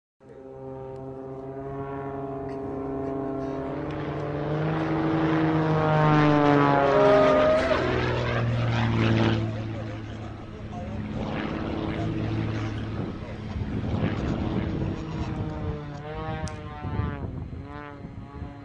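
Radio-controlled aerobatic model airplane's engine and propeller running in flight. The pitch and loudness swing up and down as it manoeuvres, loudest with a steep climb in pitch a few seconds in.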